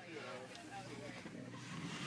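Faint, indistinct voices over a steady low hum inside a tour bus.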